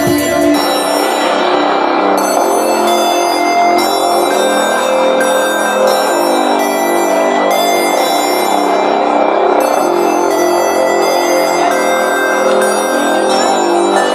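Live electronic music played from button-grid controllers and electronics. The kick drum drops out about half a second in, leaving a dense layer of sustained pitched tones with choppy, stuttering high sounds over them.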